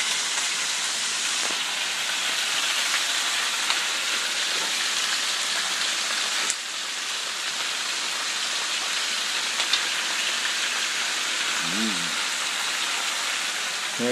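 Hen pieces sizzling in hot oil in a frying pan, a steady hiss that drops a little in level about six and a half seconds in.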